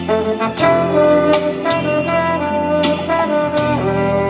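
A trombone plays a bolero melody in long held notes over a backing band, with a steady beat of about three light percussion strokes a second.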